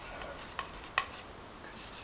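Wire brush scrubbing in the exhaust port of a motorcycle's cylinder head: a faint scratchy hiss with a couple of light clicks about half a second and a second in.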